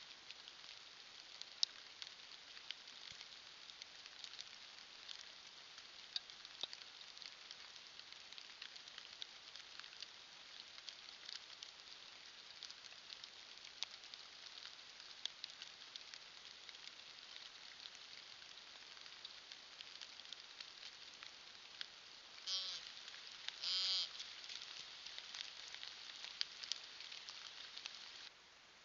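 Faint steady hiss with scattered light ticks, then two short pitched animal calls near the end, about a second and a half apart, the second one longer and louder.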